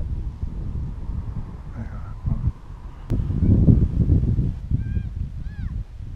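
Wind buffeting the microphone in gusts, strongest a few seconds in. Near the end come two short, high calls that rise and fall.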